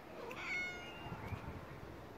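A cat meowing once, a short call of a bit over half a second.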